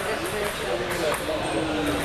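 Background voices of people talking in a sports hall, with two sharp clicks of table tennis balls being hit a fraction of a second apart about a second in.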